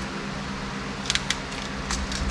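A few short, sharp metallic clicks, a small cluster about a second in and one more near the end, from a hand tool working the cut end of a stainless steel braided fuel hose clamped in a bench vise. A steady low hum runs underneath.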